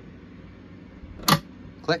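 Stainless-steel folding shelf bracket latching with a single sharp click about a second in as the countertop shelf is raised. The click is the sign that the bracket has locked and the shelf is secure.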